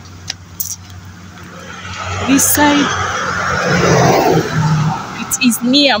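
A car overtaking close by on the road, its engine and tyre noise swelling over about two seconds and then fading as it drives away.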